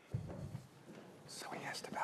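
Faint, indistinct speech, with a short low thump right at the start.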